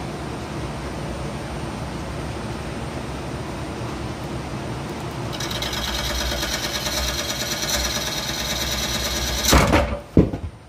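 Wood lathe running with a wet red oak bowl blank spinning. About five seconds in, a turning tool starts cutting inside the bowl with a scraping sound made of rapid, even pulses. Near the end the blank tears loose from the chuck with a loud crash.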